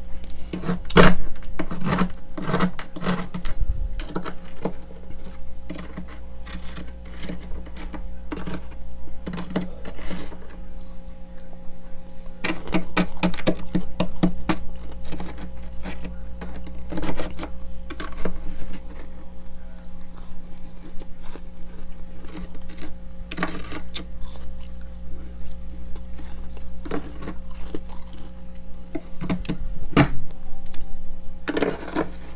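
Metal spoon scraping and scooping crusty freezer frost, and the frost crunching as it is chewed, in irregular bursts of crackly strokes.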